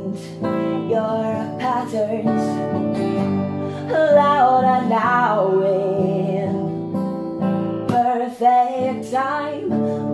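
Acoustic guitar strummed steadily under a wordless sung vocal line that slides and wavers in pitch, from about four seconds in and again near the end.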